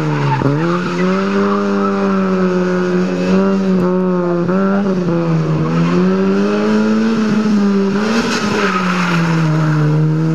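Small Fiat Cinquecento hatchback's engine held at high revs in a low gear, its pitch sagging and climbing as the car is thrown around cones, dipping about half a second in and again near the end. Tyres squeal, loudest about eight seconds in.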